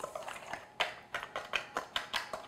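Wire whisk stirring a dry flour-and-sugar mixture in a stainless steel bowl, its wires ticking against the metal about six times a second.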